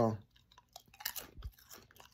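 A person chewing a crisp potato chip close to the microphone: a run of short, irregular crunches.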